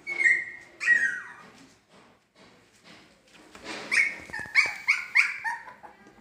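Three-week-old husky puppies whimpering and yelping in high, falling cries: two calls in the first second, then a quick run of about five short yelps near the end.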